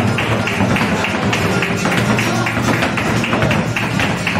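Flamenco dancer's footwork (zapateado) striking the wooden stage in a fast, steady rhythm over a flamenco guitar playing alegrías.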